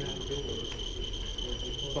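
Handheld radiation dosimeter sounding a steady high-pitched tone while checking for gamma radiation; the reading is judged not high.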